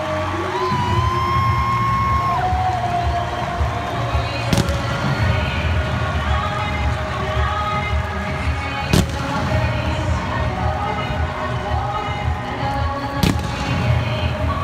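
Music with a heavy, steady bass beat played over a stadium's public-address system, with three sharp cracks about four seconds apart.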